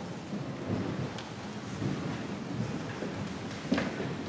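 Shuffling and rustling of people moving about in a large church, a low rumbling haze of movement. There is a faint click about a second in and a sharper knock near the end.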